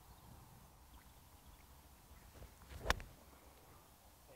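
A five iron striking a golf ball off the fairway: a single sharp click about three seconds in, otherwise only faint open-air background.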